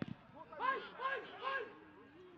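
Football players shouting on the pitch: three short, high calls in quick succession about half a second in, after a low thud at the very start as the ball is struck near the goal.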